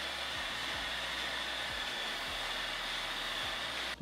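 Handheld hair dryer blowing a steady rush of air as it dries freshly gelled hair to give it height. The sound stops abruptly just before the end.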